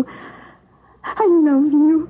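A person's voice: a breathy exhale, then a brief pause, then from about a second in one drawn-out vocal sound whose pitch dips and then levels off.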